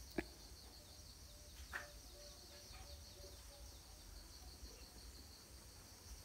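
Near silence: faint room tone with a faint high chirping that repeats evenly throughout, and one light click just after the start.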